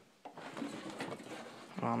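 Faint rustling and a few light knocks of handling close to the microphone as the dirt bike is wrestled about, then a man says "Oh" near the end.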